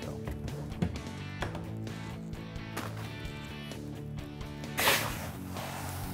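Background music throughout, with a brief rush of two-row barley malt grains poured from a bowl into a plastic bin about five seconds in.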